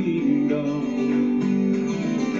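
Live country-style gospel band music played back from a video: strummed acoustic guitars, one a twelve-string, over electric bass, in a stretch between sung lines.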